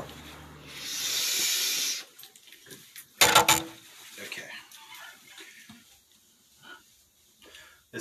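A steady hiss lasting just over a second, then a short sharp sound about three seconds in, followed by faint scattered noises.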